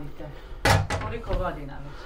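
A single sharp knock about two-thirds of a second in from a wooden dough tray being handled on a floured wooden workbench, with faint talk underneath.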